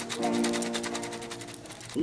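Background music: a held chord with a fast, even ticking beat of about ten ticks a second, fading toward the end.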